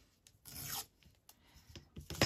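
Paper torn along the edge of a metal ruler: one short tear about half a second in, followed by a couple of faint clicks.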